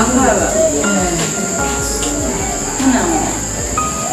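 Steady high-pitched insect chirring, with voices and music underneath.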